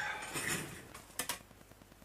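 Two quick, sharp light clicks about a second in, as of hard objects being handled on a workbench, under the tail end of a man's speech.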